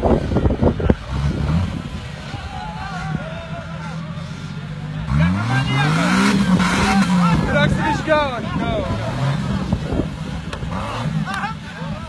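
Off-road Jeep's engine running under load on a steep muddy climb, then revving hard about five seconds in, the pitch rising and falling back over about three seconds. Voices are heard over it.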